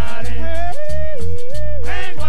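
A large band playing live: a lead line of long held notes that slide up into each note, over a repeating bass part.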